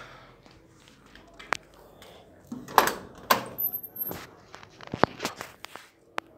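Scattered clacks and knocks from a Volkswagen Kombi's door being handled and opened: one about a second and a half in, then a cluster of several through the second half.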